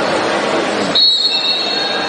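Referee's whistle blown once about a second in, a steady shrill tone held for about a second over gym noise.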